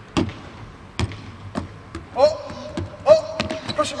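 A basketball dribbled on a hardwood court, the bounces coming about once every half second to second. In the second half, a voice calls out twice in drawn-out shouts.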